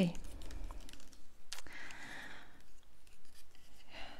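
Fingernails tapping on a laptop keyboard: a scatter of small, irregular clicks, with one sharper click about one and a half seconds in followed by a brief rustle.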